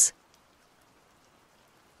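Near silence with a faint hiss: a pause between sentences of audiobook narration, with the end of the narrator's last word at the very start.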